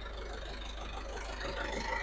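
Belarus 85 hp tractor's diesel engine running steadily as a low hum while the tractor crawls along in second gear.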